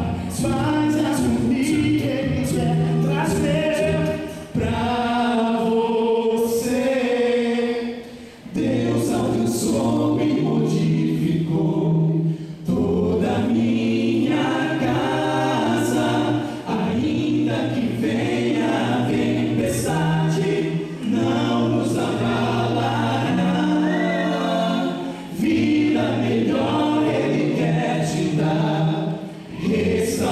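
Male vocal quartet singing a cappella in close harmony through handheld microphones, phrase after phrase with a short breath between each, about every four seconds.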